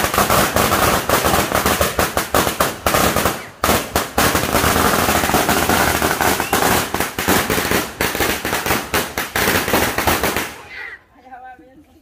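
A long string of firecrackers going off on the ground: a rapid, unbroken crackle of bangs for about ten seconds that stops suddenly near the end.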